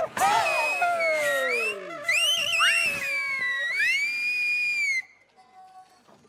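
Shaanxi Laoqiang opera singers holding long, high-pitched sliding cries together, several voices gliding down and then rising to a held high note over the ensemble. The sound stops suddenly about five seconds in.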